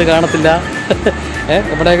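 A man speaking to the camera, with a steady low hum behind his voice.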